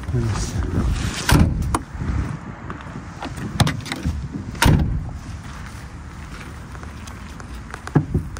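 Doors of a Ford van being handled and shut: a few sharp clunks and knocks, the loudest about four and a half seconds in.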